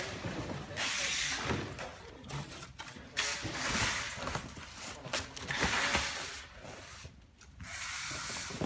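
Flattened cardboard sheets scraping and rubbing against each other and the box walls as they are pushed down into a large cardboard box, in a run of irregular scrapes.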